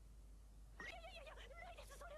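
Faint, high-pitched female squeal, a wavering drawn-out vocal whine that starts about a second in, like a flustered cry.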